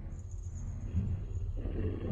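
Low, rough creature growl that swells up about a second in, over a steady low rumble.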